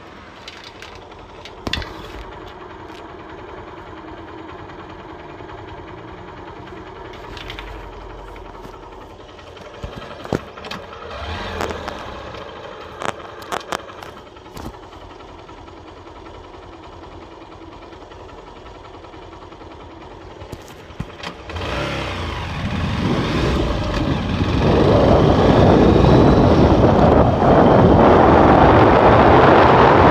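Hero Hunk motorcycle's single-cylinder engine running steadily at idle with a few sharp clicks, then the bike pulls away: from about three-quarters of the way in, the sound swells into loud rushing wind on the microphone over the engine.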